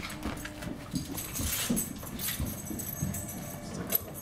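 A Rhodesian Ridgeback walking on a hard tile floor: irregular light taps of its claws and paws.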